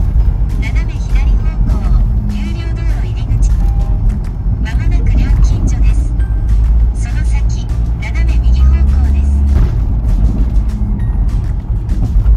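Camper van driving, its engine and road noise making a steady low rumble inside the cab, under background music.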